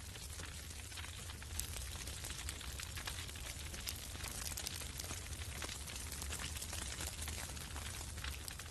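Dry grass burning, crackling with many small sharp pops over a low steady rumble.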